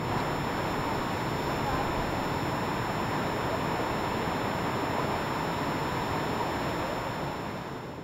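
Steady rushing of Niagara Falls and the churning water below it, fading in at the start and easing slightly near the end.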